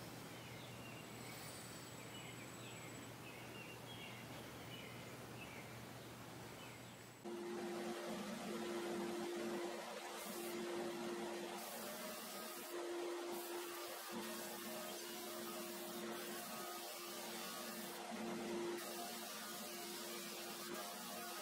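Faint steady hum with a few small bird-like chirps. About seven seconds in, it gives way to a thickness planer running with a steady motor hum.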